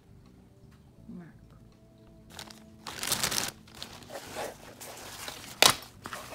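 Plastic packaging rustling and crinkling in bursts as a nylon chest pack is handled and pulled out, with a single sharp knock near the end.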